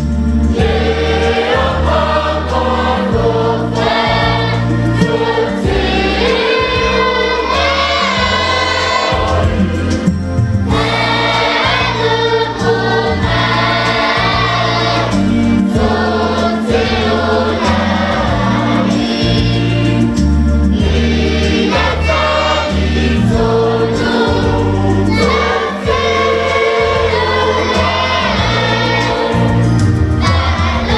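Mixed church choir of men, women and children singing a Samoan hymn in harmony, with short breaks between sung phrases.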